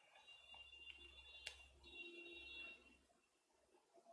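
Near silence: faint room tone with a low hum and a faint high whine, and a single soft click about one and a half seconds in.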